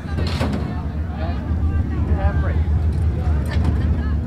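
Dirt-track modified race car engine idling with a steady, deep rumble, with voices over it.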